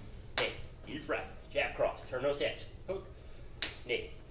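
A man's voice speaking in short bursts, with two sharp snaps, one about half a second in and one near the end.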